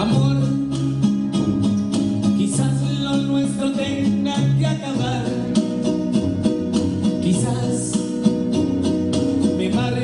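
Amplified music with a steady beat and a stepping bass line, and a man singing into a microphone over it.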